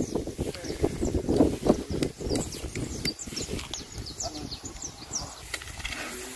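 Irregular footsteps and rustling on grass as a pair of oxen is walked along, with small birds chirping in quick falling notes in the background.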